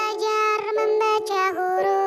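A child's voice singing a children's song in Indonesian over a music backing, the line 'belajar membaca huruf' sung as a run of short held notes.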